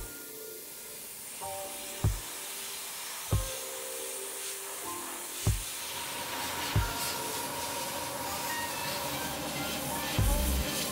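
Background music with a soft bass beat every second or two, over the steady hiss of an airbrush spraying paint, which grows louder in the second half.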